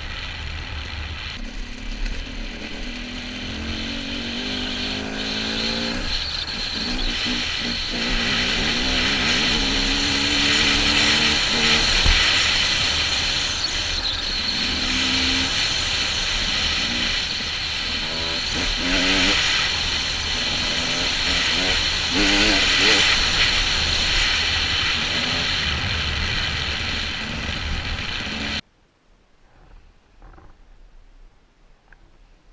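Husqvarna TE 300 two-stroke dirt bike engine under way, its pitch climbing and falling again and again as the rider accelerates and shifts, under heavy wind noise on the helmet-mounted camera. The sound cuts off abruptly shortly before the end.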